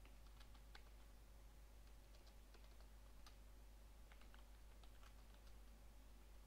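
Faint typing on a computer keyboard: irregular runs of soft keystroke clicks, over a steady low hum.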